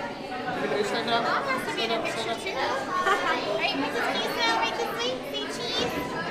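Chatter of many voices talking at once in a busy restaurant dining room.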